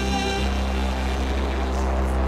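Rock band playing live through a PA, holding a sustained chord over a deep, steady bass drone.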